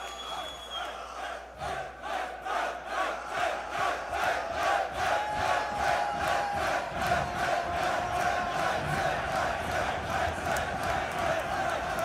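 Concert crowd chanting and shouting in a steady rhythm, about two beats a second, swelling over the first few seconds.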